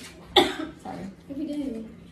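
A person coughs once, sharply, about half a second in, followed by low wordless voice sounds.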